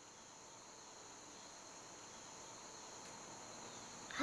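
Faint, steady, high-pitched insect chirring that slowly grows a little louder.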